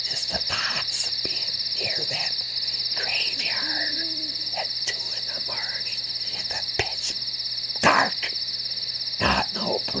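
Crickets chirping in a steady, pulsing high trill, with scattered short knocks and thumps, the loudest about eight seconds in.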